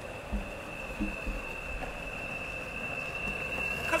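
Dual-motor Boosted electric skateboard under load while climbing a steep hill: a steady high motor whine over the low rumble of its wheels on the asphalt.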